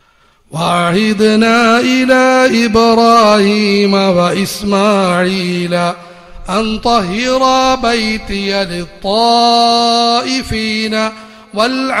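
A man's voice chanting an Arabic recitation in the melodic style of Quran recitation, with long held notes that waver, in phrases broken by short pauses for breath.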